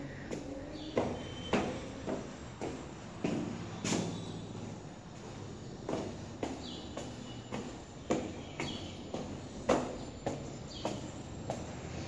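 Footsteps climbing concrete stairs, steady footfalls about two a second.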